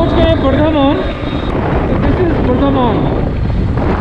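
Wind buffeting a helmet microphone over a motorcycle riding along a road, a steady low rumble. A voice whose pitch rises and falls comes over it twice, in the first second and again past the middle.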